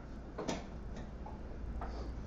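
A lull with a steady low room hum and a few faint, irregular clicks.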